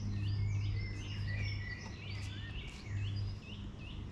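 Several birds singing, with many short repeated chirps and warbles overlapping, over a low steady hum.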